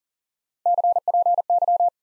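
Morse code sidetone at about 700 Hz sending the abbreviation CPY ("copy") at 40 words per minute: three quick letter groups of dits and dahs, starting a little over half a second in and lasting just over a second.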